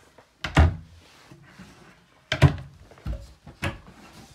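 Wooden RV cabinet doors being shut: two loud thuds, about half a second and two and a half seconds in, then two lighter knocks.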